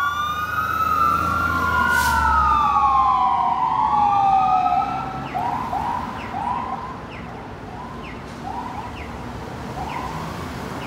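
Fire truck siren wailing in slow rising and falling sweeps, then switching to a string of short rising chirps about halfway through. The truck's engine rumble is heard as it passes early on, and everything grows fainter as the truck drives away.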